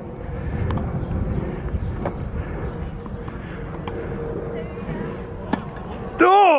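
Tennis ball being bounced and then struck with a racket for a serve: a few sharp clicks, the loudest about five and a half seconds in, over a low wind rumble on the microphone.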